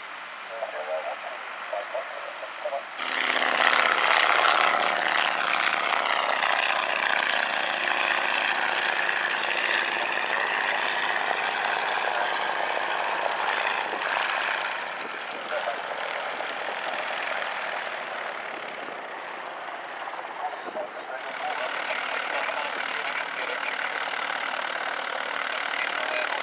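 A biplane's radial engine running at flying power, loud from about three seconds in, its pitch sinking slightly as it passes. Near the end the engine sound gives way to a steadier, quieter drone.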